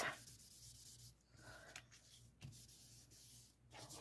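Faint rubbing of a cotton pad over printed paper soaked with mineral oil, the oil being worked in to make the paper translucent. A soft rustle of paper comes near the end as the sheet is lifted.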